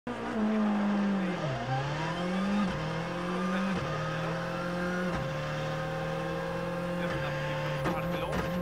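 Skoda Fabia R5 rally car heard from inside the cabin, its turbocharged 1.6-litre four-cylinder engine accelerating hard through the gears. The engine note climbs and drops back sharply with each of four upshifts.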